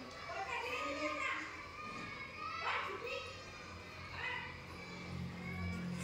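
Children's voices talking indistinctly, several at once, with a low steady hum coming in near the end.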